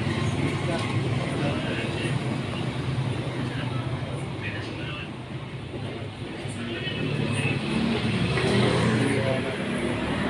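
Indistinct voices of people talking over a steady low rumble of vehicle engines from nearby road traffic. The rumble dips briefly around the middle.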